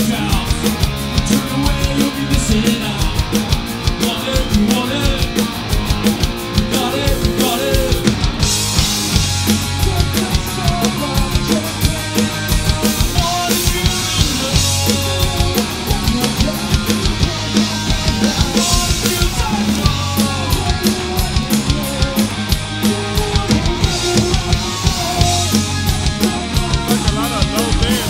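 Live punk rock band playing loudly: driving drum kit, distorted electric guitar and bass guitar, with the bassist singing. The cymbals grow brighter about eight seconds in.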